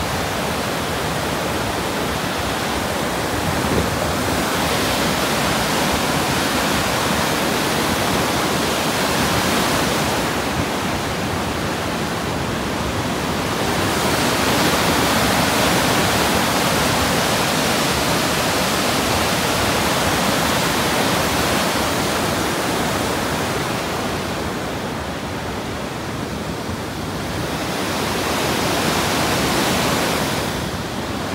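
River waterfall and rapids rushing over rock ledges: a steady, loud wash of whitewater. It swells a little midway and eases for a few seconds near the end.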